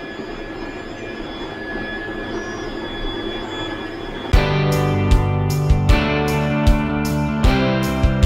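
Steady whir of a room full of running Anet 3D printers, their fans and stepper motors making a noisy hum with a few faint steady tones. A little over halfway through, background music with guitar and a beat starts suddenly and covers it.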